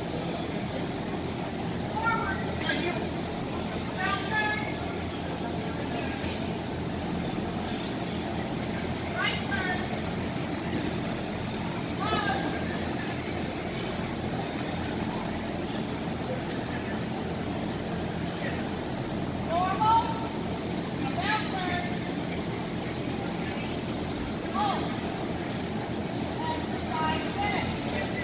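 Steady hum of a large metal hall, with a murmur of people in the background. A voice calls out short single words every few seconds, the way a judge calls heeling commands in an obedience ring.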